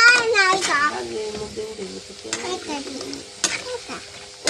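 Snack pellets (fryums) sizzling as they fry in hot oil in an iron wok, stirred with a steel ladle, with a sharp click of the ladle against the pan near the end. A voice sounds over it in the first second.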